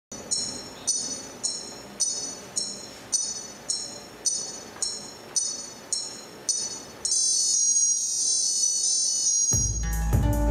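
Live band starting a song: a high bell-like note repeated about twice a second, then a held high tone, and about half a second before the end the full band comes in with bass, guitars and drums.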